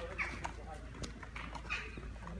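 Footsteps of several people walking on stone paving, about five sharp, uneven steps in two seconds, with voices in the background.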